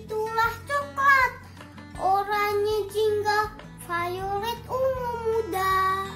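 A child's voice singing short phrases over background music with a steady low accompaniment; the phrases break off briefly twice, and a long note is held near the end.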